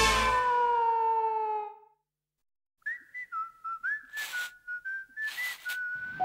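A musical piece ends on a falling slide and dies away. After a second of silence a person whistles a short tune that steps and slides between a few notes, with two brief swishes in the middle of it.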